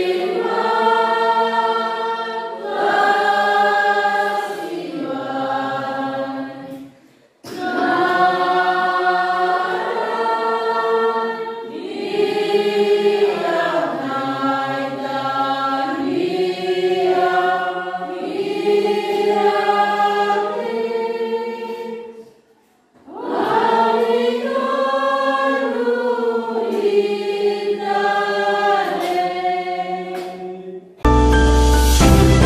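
A church congregation singing a closing hymn together in sustained phrases, with two short breaks for breath: one about seven seconds in and one about twenty-three seconds in.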